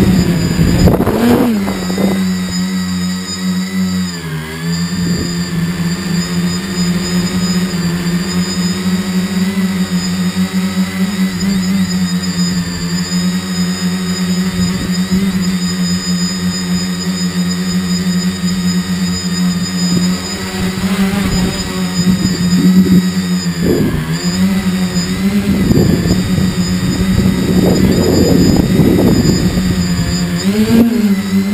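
Tricopter's brushless motors and propellers buzzing steadily in flight, heard close from its onboard camera. The pitch dips briefly about four seconds in and again near twenty-four seconds as the throttle changes, with gusts of low rushing noise near the end.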